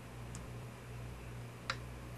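A computer mouse click near the end, sharp and single, preceded by a faint tick just after the start, over a low steady hum.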